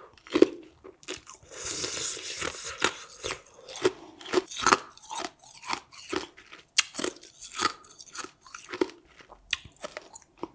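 Close-miked mouth sounds of a person chewing food: many sharp clicks and smacks in quick succession, with a drawn-out hiss about a second in that lasts over a second.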